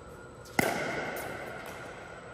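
One sharp pock of a pickleball paddle striking the plastic ball about half a second in, with a ringing echo that fades over about a second in the large indoor court hall.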